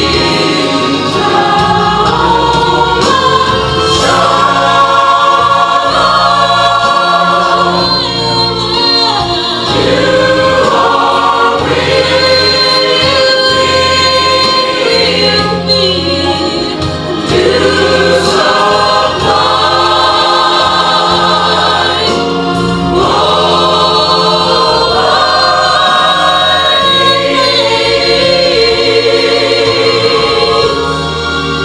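A church choir singing a gospel song with a female soloist on a microphone, over instrumental accompaniment with a held bass line. The sung notes are long and waver with vibrato.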